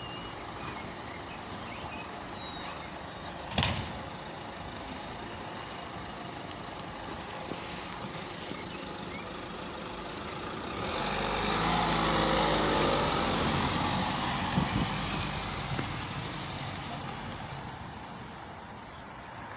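A police patrol car's engine rises and runs louder for several seconds as the car pulls away, then fades as it drives off. Earlier there is a single sharp knock over steady street noise.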